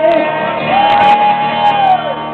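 Male singer belting a long held note over a ringing acoustic guitar chord, then a second, higher held note that slides down near the end, as a live song finishes.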